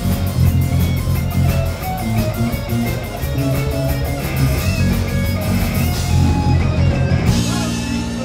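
Rock band playing live on amplified electric guitars, bass and drum kit. The even cymbal beat stops about six seconds in while the guitars and bass play on.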